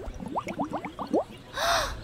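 Cartoon bubble sound effects: about eight quick rising 'bloop' glides in just over a second, followed near the end by a short breathy gasp.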